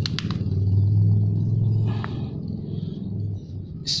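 A steady low engine hum, as of a motor vehicle running close by, fading out about three and a half seconds in. A few light clicks sound over it.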